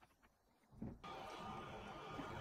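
Near silence, then from about halfway a faint steady running of a metal lathe as a countersink bit is fed into a drilled hole in a steel bar.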